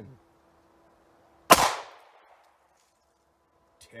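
A single 9mm pistol shot from a Taurus GX4 with a 3.1-inch barrel, firing a 115-grain standard-pressure Hornady Critical Defense round, about one and a half seconds in. The report is followed by a short echo that dies away.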